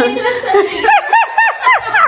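A woman laughing, with a run of about five quick, high-pitched laughs in the second half.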